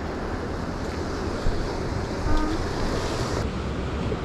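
Sea waves washing against shore rocks, with wind rumbling on the microphone.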